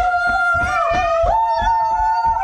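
A family shrieking together in excitement: long, held, high-pitched screams that jump higher in pitch a little past halfway, over quick thumps of jumping feet.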